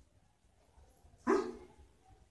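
A single short dog bark about a second and a quarter in, with near quiet around it.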